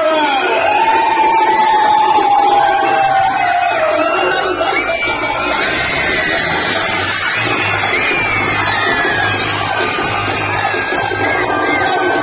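Dance music playing loudly, with a crowd of children cheering and shouting over it; a low beat comes in about four seconds in.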